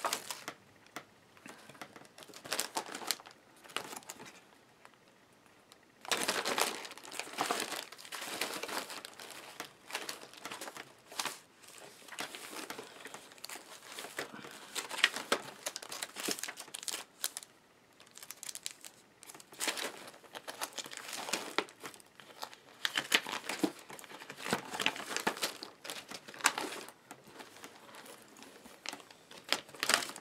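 Clear plastic sleeves and paper sticker sheets crinkling and rustling as hands sort through them, in irregular bursts with short pauses.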